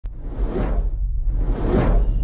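Two whoosh sound effects, one peaking about half a second in and another near the end, each swelling and fading over a steady deep rumble.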